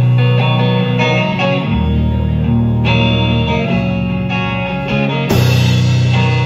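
Amplified electric guitar playing a sustained, chiming instrumental intro over low notes, with no singing. About five seconds in a cymbal crash comes in as the drums join.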